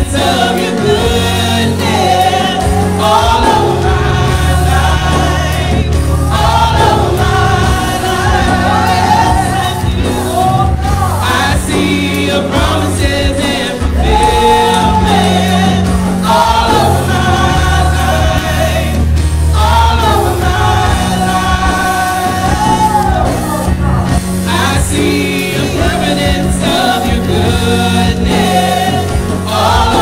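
Gospel praise team singing together with keyboard and drum accompaniment. The sung lines are long and held, over a steady low bass.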